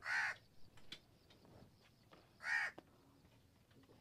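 A crow cawing twice: one harsh caw at the start and another about two and a half seconds later.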